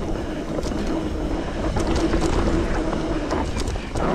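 Trek Remedy 8 mountain bike riding down a dirt trail: wind rushing over the handlebar-mounted microphone and tyres rolling over the dirt, with scattered short clicks and rattles from the bike.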